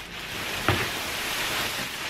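Black plastic bin bag rustling as it is pulled up and off a bundle of heavy velvet curtains, with one sharp crackle about a third of the way in.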